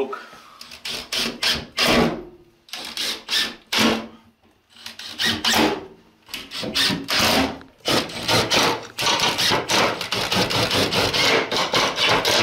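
Cordless drill driving screws to fix a shelf to its metal brackets, run in short spurts and then held for a longer run over the last few seconds.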